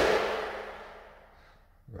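A heavy thump right at the start, ringing out and fading away over about a second and a half, leaving a faint steady hum.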